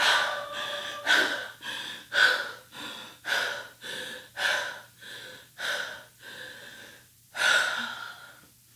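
A woman breathing heavily through her mouth, out of breath after singing: about seven deep breaths roughly a second apart, each a loud breath followed by a softer one, with a short pause before a last loud breath near the end.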